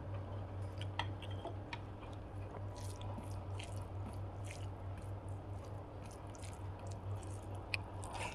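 Fingers squishing and mixing cooked rice with crispy okra fry on a plate, in short crackly bursts, with a few sharp clicks of a steel spoon and a steady low hum underneath.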